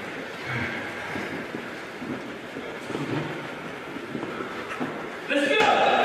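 Indistinct voices and gym noise in a large, echoing hall, with a few faint knocks. Near the end a man's voice starts up loudly, shouting encouragement.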